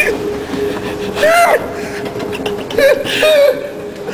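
Short high-pitched voice sounds over a steady hum: one rising and falling about a second in, then two short ones near three seconds.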